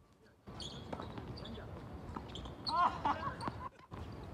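Tennis balls struck by rackets and bouncing on a hard court: a few sharp knocks spread through, starting after a short quiet opening. A player's voice calls out briefly about three quarters of the way through.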